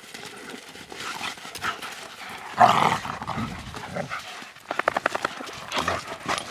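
A Doberman and a wolf play-fighting, with rough dog play-growls and scuffling on dirt. There is a loud snarling burst about two and a half seconds in, and a quick rattling run of pulses about five seconds in.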